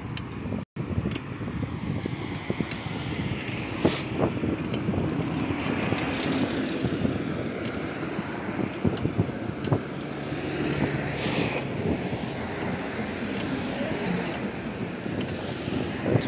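Steady road and engine noise from a moving car, with wind on the microphone and two brief gusts of hiss, about four and eleven seconds in.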